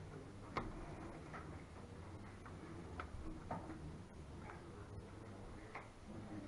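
Faint, irregular light clicks and taps, about half a dozen and the sharpest about half a second in, over the low hum of a quiet room: the small sounds of play at draughts tables, pieces being set down and game clocks being pressed.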